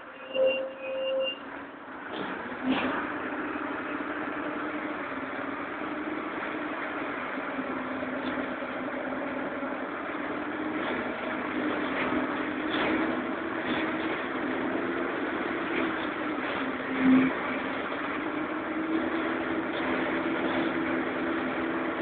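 Karosa Citybus 12M city bus heard from inside the passenger cabin: its diesel engine drones steadily, the drone drifting up and down in pitch as the bus drives. A short beep sounds near the start, a thump comes a few seconds in, and a sharper knock comes about three-quarters of the way through.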